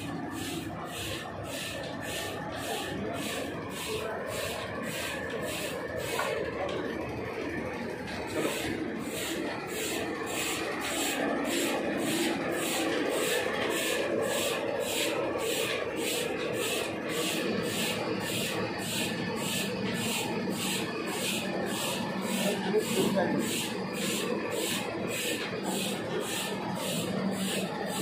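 Voices talking in the background, over a steady, even ticking at about two beats a second.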